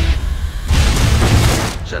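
A loud, deep film sound-effect boom about two thirds of a second in, with a rumble lasting about a second, then falling away just before the end.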